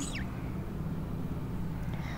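Steady low background hum with no distinct events.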